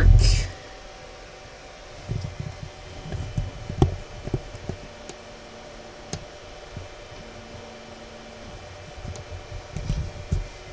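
Steady low room hum with scattered soft low thumps of movement and camera handling, clustered in the first half and again near the end.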